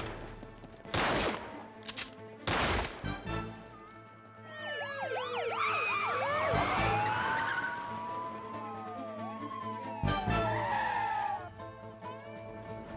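Two loud bangs in the first three seconds, then several police car sirens wailing over one another, rising and falling, from about four seconds in, over steady background music.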